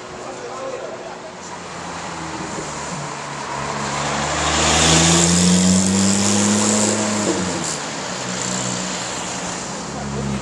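Twin-turbocharged flat-six of a heavily modified Porsche 911 GT2 (claimed 1000 bhp) pulling away. The note grows louder and climbs in pitch from about three seconds in, is loudest a little past halfway, then drops back near the end.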